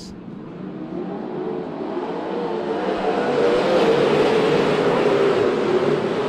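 A pack of 410 winged sprint cars accelerating together on a restart, their methanol V8 engines growing steadily louder for about four seconds as the field comes to the green, then holding at full throttle.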